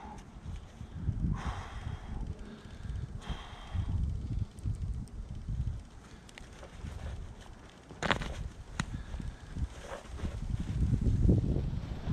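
A boulderer's strained, heavy breathing while mantling over the top of a rock, with two hard exhalations in the first four seconds. Brief scrapes of body and clothing on the rock come about eight seconds in, over a low wind rumble on the microphone.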